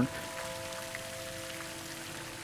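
Steady patter of falling water droplets, like rain, under soft background music holding a few long notes.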